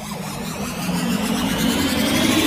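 Synthesized intro sound effect: a dense, noisy swell whose pitch climbs slowly while it grows steadily louder.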